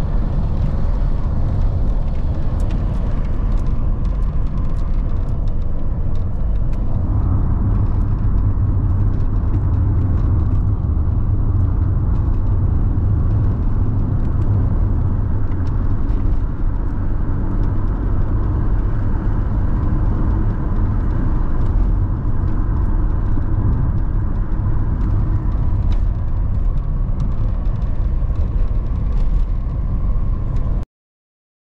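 A car driving along a rough dirt road, heard from inside the cabin: a steady low rumble of the engine and tyres, with faint scattered ticks. The note shifts slightly about seven seconds in.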